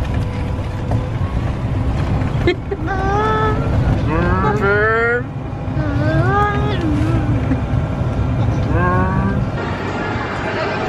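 Steady low rumble and wind noise from a golf buggy driving along a path. A high-pitched voice, likely a young child's, calls out in several rising and falling cries through the middle.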